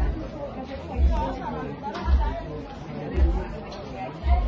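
Voices of people chattering in a street, with a low thump about once a second.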